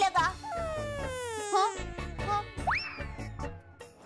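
Comic sitcom sound effects: a long falling slide in pitch, then a quick rising whistle-like swoop about two and a half seconds in that hangs and fades.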